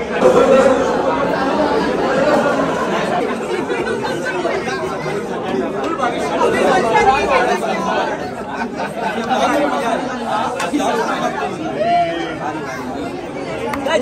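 Crowd chatter: many people talking over one another in a large, busy hall.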